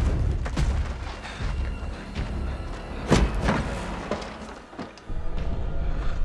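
Action-film soundtrack: a music score under a low rumble and several heavy booms and thuds, the loudest about three seconds in.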